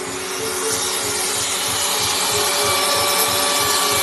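Handheld CNC router (Shaper Origin) running with its dust extractor, a steady whine over a rushing noise as it cuts small holes into a wood-and-epoxy tabletop.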